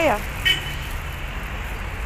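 City street background: a steady low rumble of distant traffic, with one short high beep about half a second in.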